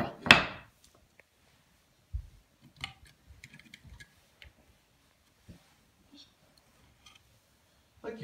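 Wooden toy train pieces being handled on a tile floor: a sharp clack right at the start, then a dull thump about two seconds in and scattered light wooden clicks and knocks as roof pieces and small figures are moved and set down.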